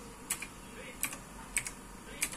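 Computer keyboard being typed slowly, a handful of separate keystrokes at uneven intervals, two of them close together about three-quarters of the way through.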